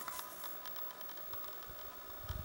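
Faint handling noise of a hand-held camera: soft scattered clicks and rustling over a faint steady whine, with a brief louder rustle at the start.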